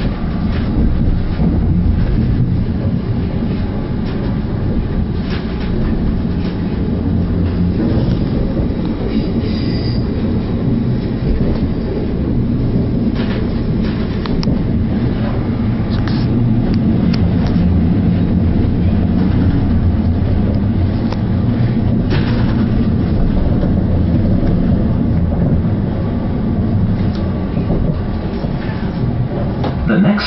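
On-board running noise of a Northern Rail Class 333 Siemens Desiro electric multiple unit in motion: a steady low rumble of wheels on rail, with scattered short clicks from the track.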